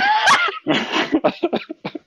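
Loud laughing that breaks out in a high, gliding squeal and goes on in a run of quick, breathy bursts.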